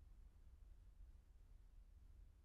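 Near silence: only a faint low rumble.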